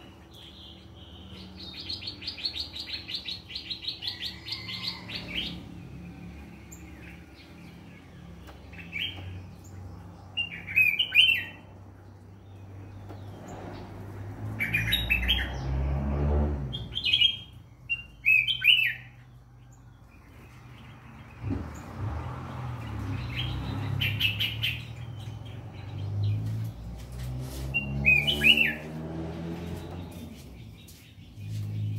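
A caged cang jambul songbird singing: a fast trill of rapidly repeated high notes near the start, then short chirped phrases every few seconds.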